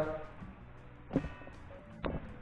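Faint music from a television playing a concert, with one short, sharp sound a little after a second in.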